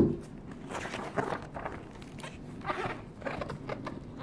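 A dull thump at the start, then the pages of a large hardcover art book rustling in a series of short swishes as they are turned.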